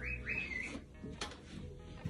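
Pet cage bird chirping: a short warbling call in the first second, with soft background music underneath.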